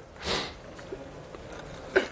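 A man sniffs once, sharply and briefly, close to the microphone, early in the pause.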